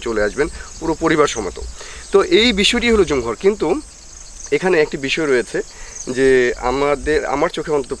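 A man talking, with a steady high-pitched drone of insects behind him.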